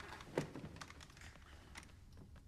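A few scattered light clicks and taps, with one louder knock about half a second in.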